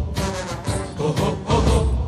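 Drums beating a marching rhythm under a chorus of children's voices singing a patriotic marching song.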